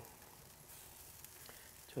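Faint, steady sizzling of bacon-wrapped burger onion rings cooking on the grate of a barrel smoker over lump charcoal.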